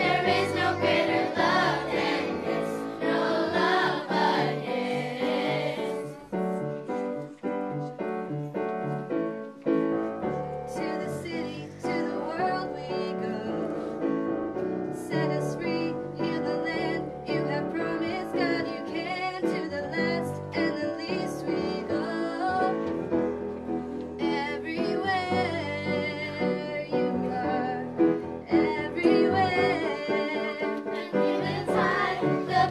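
A group of children and teenage girls singing a song together.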